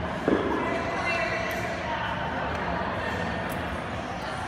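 A single heavy thud about a third of a second in, echoing in a large hall, over a background of distant voices.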